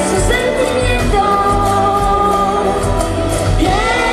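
Live band playing a song: a female lead singer holding long sung notes over drums, bass guitar and guitars.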